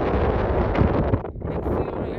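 Wind buffeting the microphone, loud and gusty, with a brief lull just after a second in.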